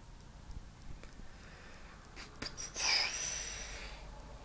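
A person's heavy breath out, a sigh, about three seconds in, fading over about a second, with a few faint clicks from handling the device before it.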